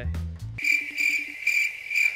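iPhone FaceTime outgoing-call ringing tone: a steady, high, pulsing tone that starts about half a second in, while the call has not yet been answered.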